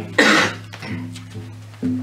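A single short cough about a quarter second in, over background guitar music that holds steady notes and strikes a new one near the end.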